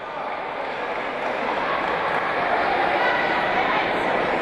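Crowd noise in an indoor sports hall: many voices blending together, growing gradually louder.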